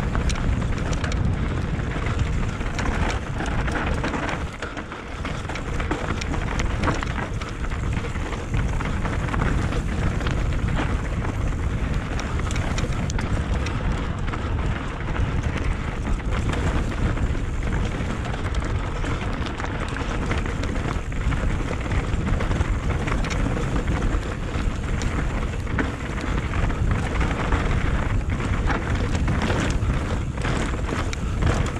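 Mountain bike riding down rocky singletrack, heard from a helmet-mounted camera: a steady rush of wind on the microphone, with the tyres crunching over gravel and loose rock and the bike rattling over many small bumps. The sound drops briefly about four to five seconds in.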